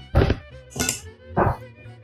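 Three brisk strokes of a utensil beating egg-and-flour batter in a small bowl, about two every second, over background music with a fiddle.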